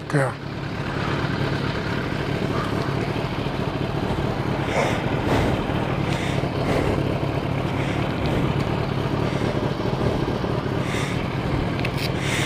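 Motorcycle engine running steadily while under way, with a constant rush of wind noise on the microphone.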